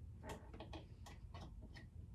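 Faint, irregular clicks and light taps, about six in two seconds, from small objects being handled close to the microphone.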